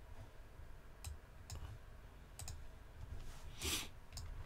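A few sharp computer clicks: one about a second in, another half a second later, and two close together in the middle. Near the end comes a brief, louder rush of noise, over a faint low hum.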